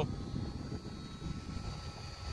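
Small 12 V Mitchell dashboard car fan running: a steady whir of moving air with a faint motor hum.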